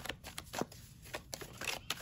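A tarot deck being shuffled by hand: a run of quick, soft card clicks and flicks, thinning out briefly in the middle.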